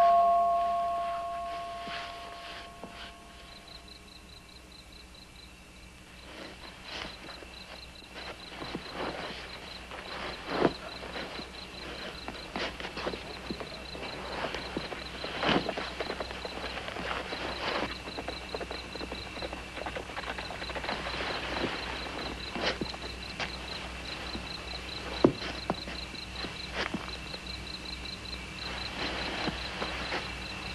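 Crickets chirping steadily as a night background, with scattered soft rustles and knocks as clothes are stuffed into a cloth carpet bag. A ringing tone fades out over the first few seconds.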